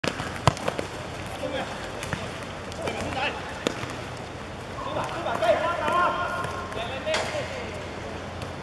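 A football being kicked and bouncing on a hard outdoor court: several sharp thuds a second or more apart, the first the loudest.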